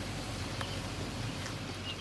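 Steady low background noise with no distinct event: room tone.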